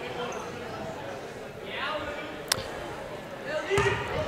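Gymnasium crowd chatter and faint voices between plays, with one sharp knock about two and a half seconds in: a basketball bouncing on the hardwood floor.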